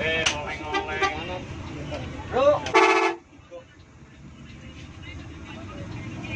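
A bus horn gives one short, loud blast about three seconds in. After it comes the low, steady rumble of the bus, heard from inside its cabin.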